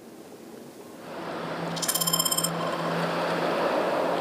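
Road traffic noise fading up after about a second and then holding steady, with a faint steady hum and a brief high ringing sound about two seconds in.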